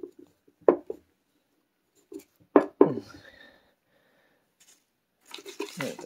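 A few short knocks and light clatter of things being handled on a wooden tabletop, one about a second in and a louder pair just past the halfway mark.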